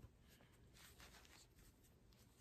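Near silence, with faint rustling as a soft-bodied vinyl doll's legs are handled and folded on a fleece blanket.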